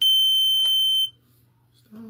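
A small unidentified electronic device letting out one steady, high-pitched electronic tone for about a second, then cutting off suddenly.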